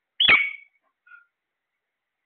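Caged parakeet giving one loud, short screech that drops steeply in pitch, then a faint short chirp about a second in.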